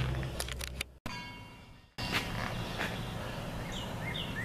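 A low steady hum with a few light clicks, cut off abruptly by a short quieter stretch. Then steady outdoor background noise, with small birds chirping near the end.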